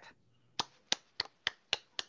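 A short run of six sharp hand claps, a little over three a second, heard through a video-call feed.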